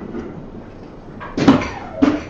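Soft-tip dart striking an electronic dartboard with a short, sharp knock about one and a half seconds in, followed by a second knock near the end.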